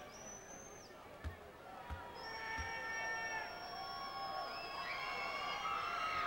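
Basketball bounced three times on a hardwood floor at the free-throw line, then the arena crowd builds into a din of long, drawn-out whistles and yells as the free throw goes up.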